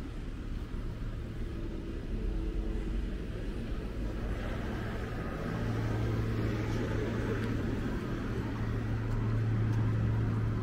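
Street traffic: a car engine running close by, a steady low hum that grows louder about halfway through, over the hiss of passing tyres.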